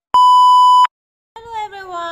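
A single steady electronic test-tone beep, just under a second long, the tone that goes with a TV colour-bars test pattern. It cuts off sharply.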